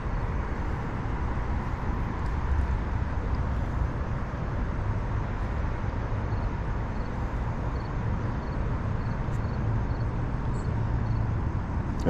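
Steady low rumble of outdoor city ambience, with distant road traffic most likely, holding an even level with no distinct events.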